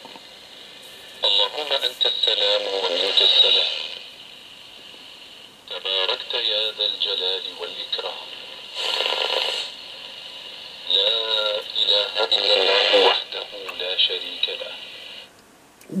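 Arabic religious speech from a shortwave AM broadcast station, heard through a home-built shortwave receiver with its IF filter on the broad setting. The speech comes in three stretches with a steady hiss of radio noise in the pauses and a short burst of noise near the middle.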